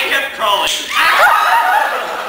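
Voices and laughter, with one sharp slap or snap about two-thirds of a second in.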